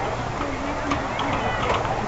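Indistinct talking of nearby spectators over a steady background of crowd noise.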